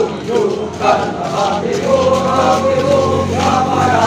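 A large group of men's voices singing a marching song together in unison, with long held notes.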